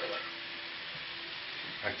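Dödölle potato dumplings sizzling in hot oil in a frying pan: a steady, even hiss.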